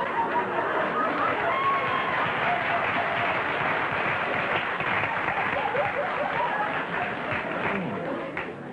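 Large studio audience laughing, with applause mixed in, at a steady level.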